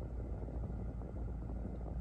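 Steady low rumble of a car heard from inside its cabin, with no other event standing out.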